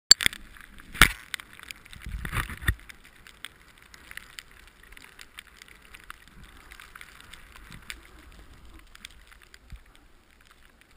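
Skis sliding over snow, a steady hiss, with a few loud knocks and rubbing from the body-worn camera being handled near the start.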